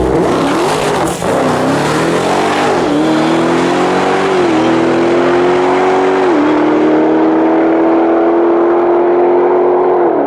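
Dodge Challenger SRT Demon 170's supercharged 6.2-litre V8 at full throttle down a drag strip, its pitch climbing and dropping back at each of several quick upshifts, then holding one long, steadily rising pull.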